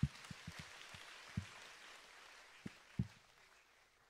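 Congregation applauding faintly in a large hall, the clapping dying away, with a few soft low thumps scattered through it.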